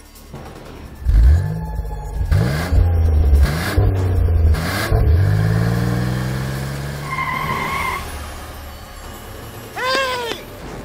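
A 1950s Chevrolet Corvette's V8 engine revving in several rising and falling bursts, then pulling away with its note falling steadily as the car drives off. A brief high squeal about seven seconds in.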